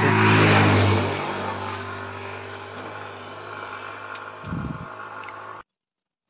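A scooter passing close by, loudest about half a second in and fading away over the next few seconds, over a steady low drone. A short low rumble comes near the end, and the sound cuts off abruptly.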